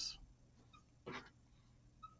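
Near silence: room tone, with one short soft noise about a second in.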